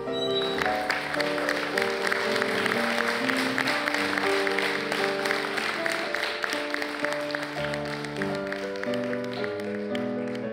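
Background music of slow held notes over a crowd applauding; the clapping rises about half a second in and dies away near the end.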